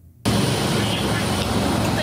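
AgustaWestland AW159 Wildcat naval helicopter hovering close over a ship's deck: loud, steady rotor and turbine noise with a thin high whine, cutting in abruptly a quarter second in.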